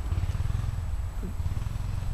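Low, fluttering rumble of a motocross bike's engine running, with a faint rising note about a second in.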